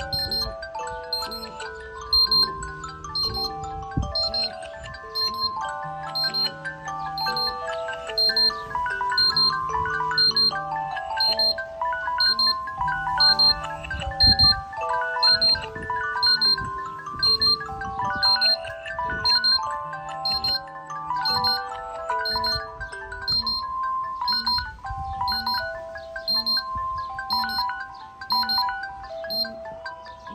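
Alarm and timer ringtones from several smartphones (Asus Zenfone, HTC, Xiaomi Mi A2, Samsung Galaxy Note20 and an older white Samsung Galaxy) sounding at once: overlapping chiming, xylophone-like melodies layered over a short high beep that repeats steadily, a little under twice a second.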